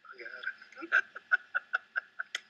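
A voice, then a laugh in short rapid pulses, about five a second, trailing off.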